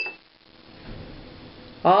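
Takli spindle clinking once against the small ceramic bowl it spins in: a short, bright ringing ping at the very start, then only faint quiet until a voice begins near the end.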